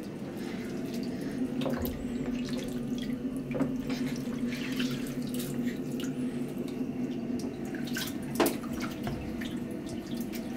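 Bathwater splashing and trickling in a small plastic baby bath as a hand scoops water over an infant, with a few small splashes, the loudest about eight and a half seconds in. A steady low hum runs underneath.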